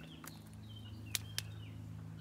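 Steady low drone of bees and bumblebees humming around a flowering wild rose, with a few short bird chirps. Two sharp clicks come a little over a second in.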